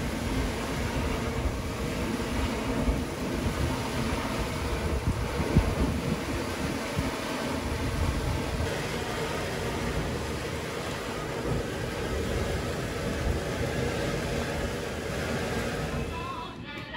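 Hot spring water pouring from a spout into a wooden trough and churning around hanging baskets of onsen eggs, a steady rushing and splashing.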